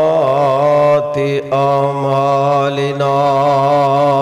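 A man chanting the Arabic opening praise of a Friday sermon into a microphone, in a slow, melodic style with long, wavering held notes. There is a short break for breath about a second in.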